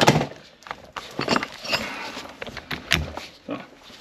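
A keyless drill-chuck adapter's shank being fitted into a rotary hammer's SDS-plus tool holder: handling rattles and plastic-and-metal clicks, with a knock at the start and a sharp click about three seconds in.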